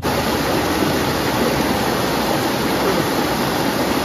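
Hill stream cascading in small falls over boulders: a steady, unbroken rush of water.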